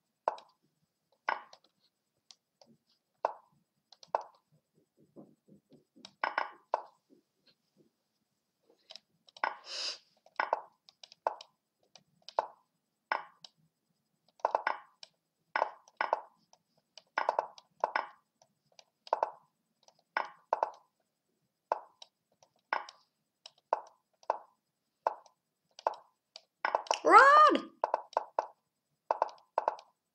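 Online chess move sounds: short wooden clicks of pieces being placed, coming quickly, often in pairs, about one to two a second as both players move in a fast bullet game. A brief voice sound about three seconds before the end is the loudest thing.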